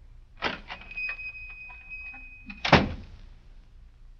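Radio-drama sound effect of a shop door: a click as it opens, a steady high ringing tone for about a second and a half, then the door shutting with a loud bang.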